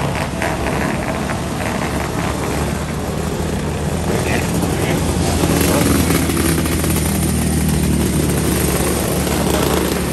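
A pack of small winged 500-class dirt-track race cars running around the oval, their engines loudest about six seconds in as one car passes close by.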